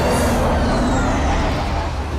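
Engine of a futuristic aircraft in a sci-fi film sound effect: a loud, steady rushing jet noise over a deep rumble, with thin whistling tones gliding in pitch as the craft dives away, easing slightly near the end.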